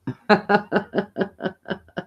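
A woman laughing: a run of about eight short chuckles, roughly four a second, trailing off quieter toward the end.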